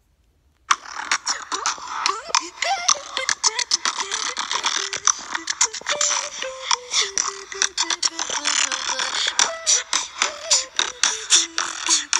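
A homemade electronic track played on a phone through its small speaker, starting about a second in: a dense beat of sharp clicks with a melody that steps from note to note.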